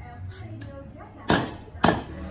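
Two sharp blows from a white-faced mallet on a Peugeot 206 rear trailing arm, about half a second apart, tapping parts into the arm's bearing bore.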